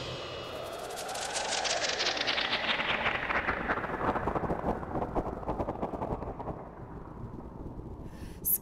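Stage sound effect of a rumble with rapid crackling, swelling over the first couple of seconds and then slowly fading away.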